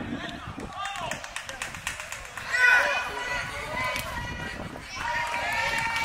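Players shouting to each other across an outdoor soccer pitch during play, loudest about two and a half seconds in and again near the end. A few sharp knocks come in the first couple of seconds over a steady low rumble.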